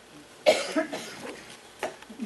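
A single loud cough about half a second in, followed by a short click near the end.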